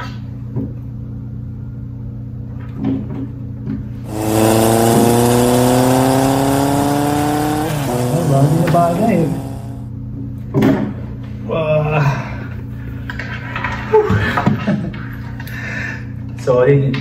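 A motorcycle engine revving: a sudden start about four seconds in, its pitch rising steadily for about three and a half seconds, then wavering and dying away. A steady low hum runs underneath throughout.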